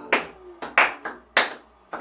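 Hands clapping: about four sharp, unevenly spaced claps.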